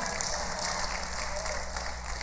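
Congregation applauding, a steady even patter.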